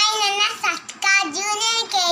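A young girl singing in a high child's voice: a few held notes in short phrases with brief breaks between them.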